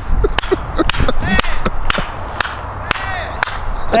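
Men whooping and calling out over a quick run of short falling sounds, about four a second early on, and many sharp clicks.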